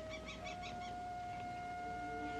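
Orchestral film score: sustained held notes, stepping up slightly in pitch about half a second in, with lower notes joining near the end. A run of quick high chirps sounds over the first second.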